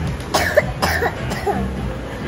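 A person coughing a few times in short, harsh bursts, over faint background music.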